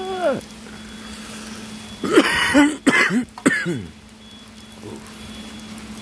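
A man coughing and clearing his throat: a cluster of several harsh coughs about two to four seconds in, after a drawn-out laugh tails off at the very start.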